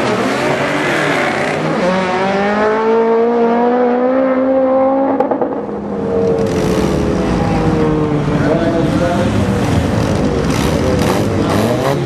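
Drag-race cars, a T-Bucket hot rod and a Mitsubishi Lancer Evolution, running at full throttle down the strip, engine pitch climbing steadily through each gear. The pitch drops about five seconds in, at a shift, then climbs again.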